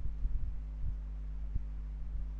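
Steady low electrical hum, with a few soft low thumps about a quarter, half, one and one and a half seconds in.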